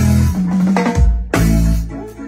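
Acoustic drum kit played in a few heavy accented hits: drum strikes with a deep low ring and cymbal crashes, at the start, about a second in and again just after.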